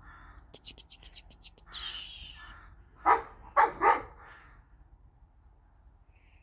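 A dog barks three times in quick succession, about three seconds in. Before that there is a quick run of faint high ticks and a short, quieter noisy sound.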